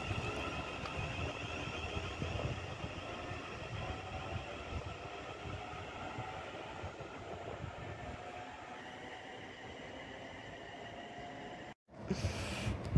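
Two coupled Class 350 Desiro electric multiple units pulling away and receding, their sound fading steadily, with a faint whine rising in pitch. The sound cuts off suddenly just before the end.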